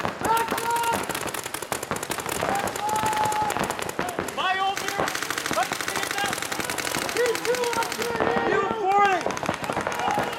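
Paintball markers firing in rapid, near-continuous streams of many shots a second from several guns at once, with shouted calls over the firing.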